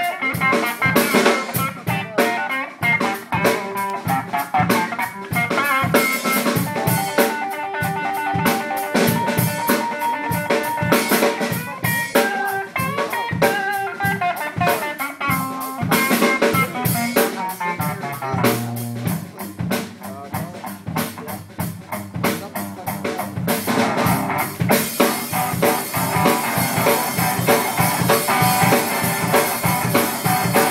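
Live rock played by an electric guitar and a drum kit together: steady drum beat under guitar chords and riffs.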